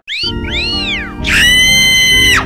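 Electronically effects-processed, pitch-shifted sound. Two short glides rise and fall in pitch, then just past halfway a steady held tone with many overtones begins.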